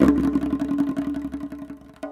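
Tonbak (Persian goblet drum) played solo in a rapid roll of dense, fast strokes. It starts sharply and slowly fades over about two seconds, over the drum's ringing pitched tone.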